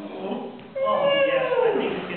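A performer's drawn-out vocal call, about a second long, starting a little under a second in and sliding steadily down in pitch, a wordless animal-like sound.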